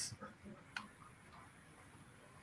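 A few faint, isolated clicks over quiet room tone, the clearest a little under a second in.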